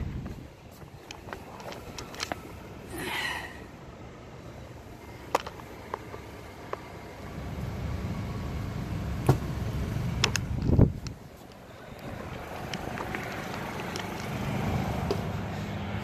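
Scattered clicks and knocks from handling an RV shore-power cord and plug, over a steady low hum, with a dull thump near the end.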